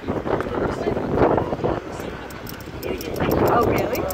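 People talking and laughing close to the microphone, the words not made out.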